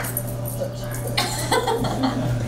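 Short vocal exclamations and laughter in a room, over a low steady hum.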